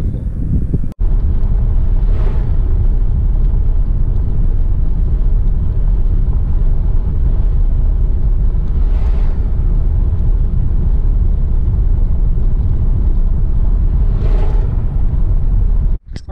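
Steady low rumble of a car's engine and tyres on the road, heard from inside the moving car, with three brief swells of noise, one about nine seconds in as an oncoming vehicle passes.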